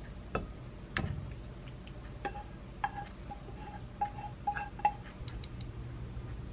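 Utensils and a frying pan clinking and tapping against a ceramic plate while pasta is served: a series of sharp, irregular clinks, several leaving a short ringing tone.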